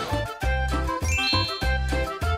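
Upbeat edited-in background music with a bouncy beat and ringing bell-like tones; a little after a second in, a twinkling chime glides upward over it.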